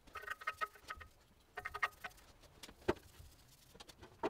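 Paintbrush bristles scratching and dabbing on the steel of a stair stringer: faint, short runs of quick scratchy strokes with pauses between, and one sharper click near three seconds in.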